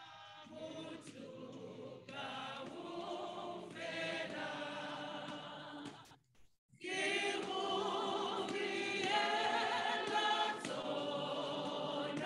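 Church choir singing. The sound drops out for about half a second a little past halfway, then the singing comes back louder.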